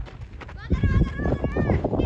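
Children's high-pitched shouts and calls from the players on the pitch. Under them, less than a second in, a loud low rumble sets in and continues.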